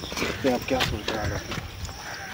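A man's voice says a word or two, with a few sharp clicks and taps scattered through.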